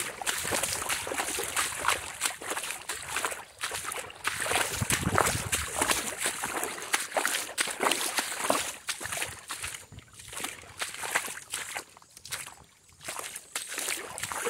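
Small lake waves lapping and sloshing irregularly against a pebble shore, with a low rumble about five seconds in.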